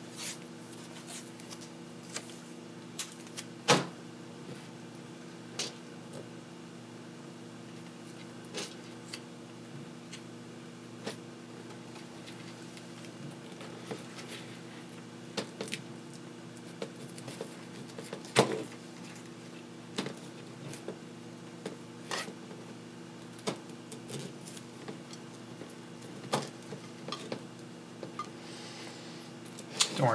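Scattered light clicks and taps of small quadcopter parts being handled and fitted together on a workbench, the loudest about four seconds in, over a steady low hum.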